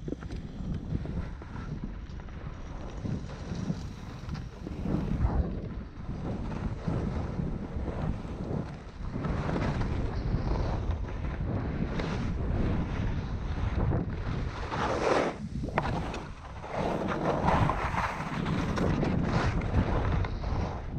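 Wind rushing over a worn camera's microphone during a downhill ski run, with the scrape of edges on packed snow. The scraping rises in louder swells through the second half as turns are carved.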